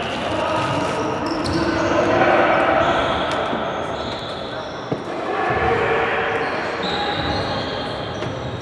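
Sports hall ambience during a futsal match: voices of players and spectators echoing in the hall, with short high squeaks of shoes on the court floor and a single sharp knock about five seconds in.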